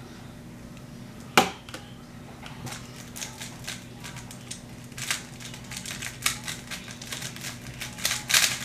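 Plastic speedcube being turned by hand: a single sharp click about a second and a half in, then a quick, irregular run of clicking turns that carries on to the end.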